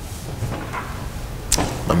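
Quiet room tone with a low steady hum through the church sound system. About one and a half seconds in comes a short sharp noise, then a man's voice starts speaking.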